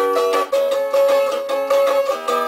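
A small acoustic string instrument strummed in bright, quick chord strokes, the chord changing about half a second in.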